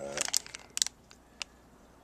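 Plastic package of push-in wire connectors crinkling as it is handled: a few short, sharp crackles in the first second and one more about a second and a half in.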